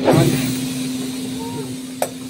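Passengers' voices in a train carriage, with a short loud exclamation at the start and a brief call later, over a steady low hum.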